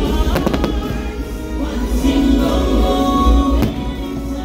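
Aerial fireworks shells bursting, with a quick cluster of reports about half a second in and a single sharp report near the end. Loud show music plays throughout.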